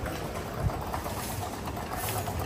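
Street noise: a steady low rumble with some rattle, and a single thump about two-thirds of a second in.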